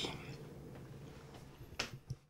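Faint room tone with one short, sharp click near the end, like a finger snap or a light tap.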